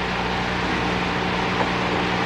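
Steady background hiss with a low electrical hum: the room and recording noise of a live lecture recording during a pause in the talk.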